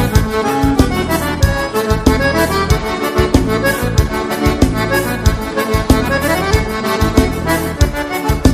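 Live gaúcho dance music: an accordion carries the melody in an instrumental break over bass and drums, with a steady dance beat.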